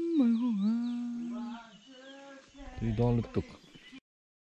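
A person's voice drawing out one long held note for about a second and a half, then a short burst of quick words about three seconds in.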